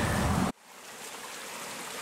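Fast-flowing shallow creek water rushing and splashing around the legs of people standing in it in waders. It fades in with an even hiss after a sudden cut from louder outdoor noise about half a second in.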